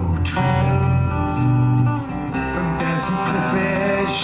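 Live acoustic folk song: acoustic guitar accompaniment under long held melody notes, between sung lines.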